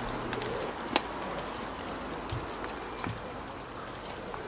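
Birds calling in woodland over a steady background hiss, with a single sharp click about a second in.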